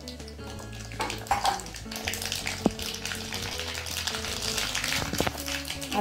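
Hot oil sizzling and bubbling in a small iron tempering pan, with one sharp click a little under three seconds in.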